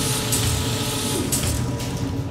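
Sound-effect track of whirring, clattering machinery: a dense mechanical din with a low rumble underneath, running steadily.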